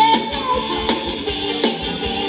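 Live Thai band music for ramwong dancing, with a steady fast beat under a held melody.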